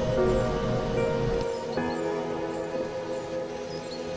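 Meditation backing track: sustained synthesizer tones held steady over the sound of falling rain, with a low rumble fading out about a second and a half in.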